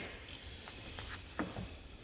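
Faint handling noises as a black rubber air-brake hose is moved on a wooden workbench, with a few small clicks and knocks.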